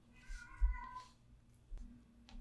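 A cat meows once, a short call of under a second, over soft rubbing of a wax pastel stick on paper.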